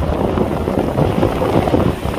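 Strong wind buffeting the microphone over rough surf, with waves breaking and washing against a swamped boat's hull and the seawall rocks.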